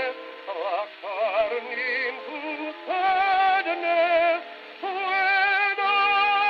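78 rpm shellac record playing on an acoustic gramophone, in the thin, bass-less sound of an early acoustic recording. Wavering melody notes in the first half give way to long held chords from about halfway.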